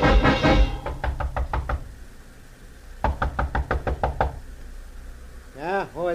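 Radio-drama sound effect of knocking on a door: a quick run of sharp raps, a pause, then a second, longer run. The tail of an orchestral music bridge ends just before, and a man's voice is heard briefly near the end.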